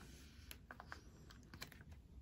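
Near silence with a few faint light clicks and taps as a sleeved photocard is pushed into a plastic binder-page pocket and pressed flat by hand.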